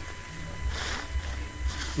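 Low wind and handling rumble on a phone's microphone as it is carried through tall weeds, with a brief rustle of grass about a second in.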